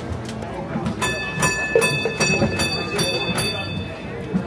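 Horse-drawn trolley's bell rung in a quick run of about three strikes a second, starting about a second in and lasting some two and a half seconds, over crowd chatter.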